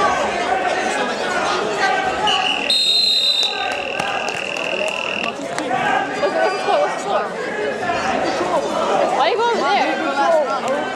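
Wrestling match buzzer sounding once, a steady high tone lasting about three seconds that starts about two seconds in, signalling that time is up on the period, over crowd chatter in a gym.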